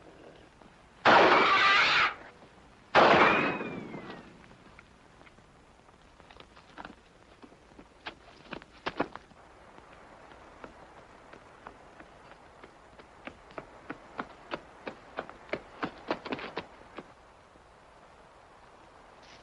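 Two loud rifle shots about two seconds apart, the second trailing off with echo. Later comes a run of faint light taps that grows quicker near the end.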